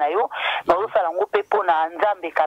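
Speech only: a woman talking in French over a telephone line, the voice thin and cut off in the highs.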